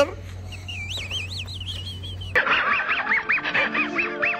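Cartoon sound effects from an inserted cartoon clip. A wavering, high whistle-like tone comes first. About two and a half seconds in, the sound cuts to cartoon music carrying a quick run of short, squeaky, rising-and-falling honk-like calls.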